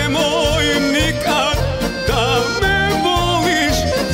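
A man singing live into a handheld microphone with a live band, his melody wavering with strong vibrato and ornamented turns over a steady bass beat.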